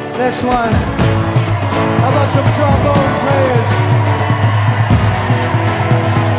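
Live rock band playing an instrumental passage: a steady bass line and drums under a lead line that slides up and down in pitch.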